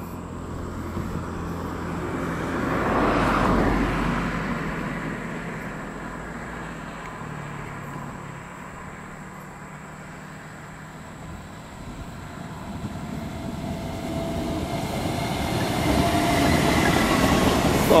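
Taiwan Railways EMU400 electric multiple unit approaching along a viaduct, its running noise growing steadily louder over the last six seconds as it nears. Before that, a broad swell of noise rises and fades about three seconds in.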